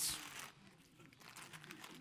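Faint rustling of a gift bag as a hand rummages in it to take out a prize.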